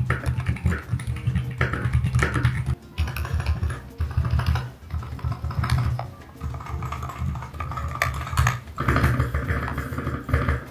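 Fast typing on a Melgeek Mojo68 mechanical keyboard with factory-lubed Kailh Box Plastic linear switches, a dense run of keystroke clacks with a few brief pauses.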